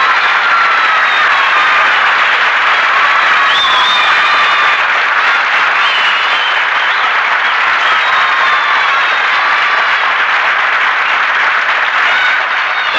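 Studio audience applauding steadily, with faint music underneath.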